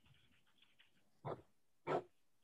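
A dog barking twice in quick succession, two short barks about half a second apart, in an otherwise quiet room.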